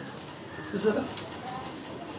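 A pause in the speech with a faint, low bird-like cooing about half a second to a second in, over quiet room tone.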